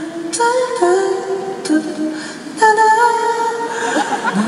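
A man singing a slow melody into a handheld microphone, in long held notes that step from pitch to pitch, the last held for over a second.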